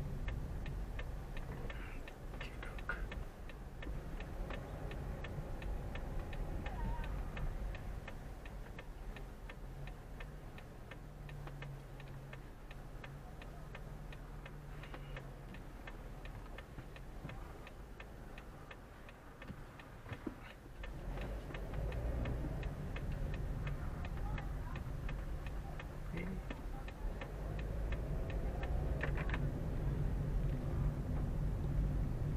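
A car's turn-signal indicator ticking steadily and evenly, heard from inside the cabin over the low hum of the engine as the car creeps along and idles.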